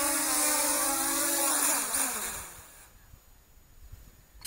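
Syma W1 brushless quadcopter's motors and propellers humming steadily close by, then winding down with a falling pitch and stopping about two and a half seconds in as the drone lands.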